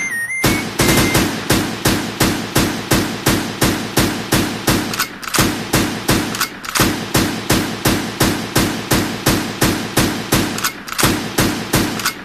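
Recorded gunfire sound effect: a long, even run of single shots, about three a second.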